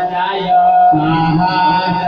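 Hindu devotional mantra chanting set to music: a melodic chanted phrase over a steady held tone, with a new phrase starting about half a second in.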